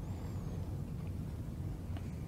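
Room tone: a steady low hum with no speech.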